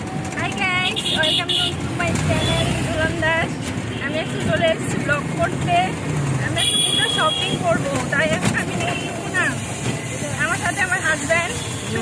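A woman talking over the steady rumble and road noise of a moving rickshaw, heard from inside its cab.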